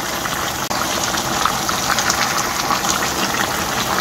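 Braised chicken with potatoes and carrots bubbling in its sauce in a frying pan on a gas burner: a steady hiss of many small pops, cutting out briefly under a second in.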